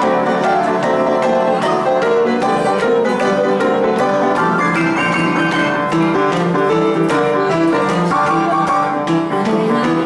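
Upright piano playing fast boogie-woogie, with a steady, driving rhythm of repeated chords and notes.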